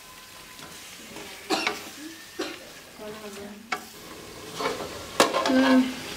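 Wooden spatula stirring and scraping potato curry in a steel karahi, the masala sizzling, with a few sharp scrapes against the metal. Near the end comes a louder metallic clatter as a steel lid is brought over the pan.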